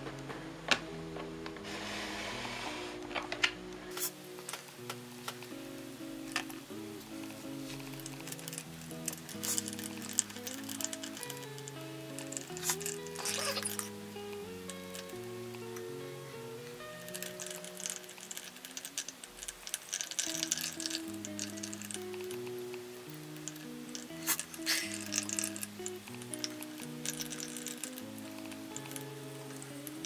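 Background instrumental music: a melody played on a plucked-string instrument, note after note.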